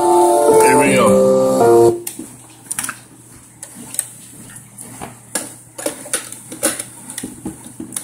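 Music playing from a Realistic Modulette 602 boombox's cassette deck, cutting off suddenly about two seconds in. It is followed by scattered clicks and knocks from the boombox's cassette controls being worked.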